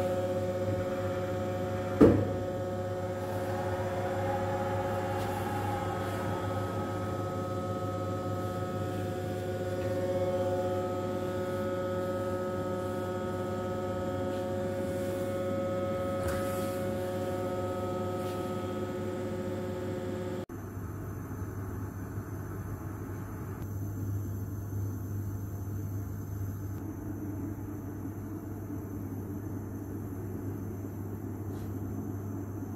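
Reishauer RZ 362A gear grinding machine running: a steady electrical hum with several steady whining tones above it, and one sharp knock about two seconds in. About two-thirds of the way through the tones cut off abruptly, leaving a lower, rougher hum.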